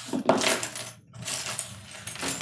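Two short bursts of clattering from small objects being handled, each about half a second long.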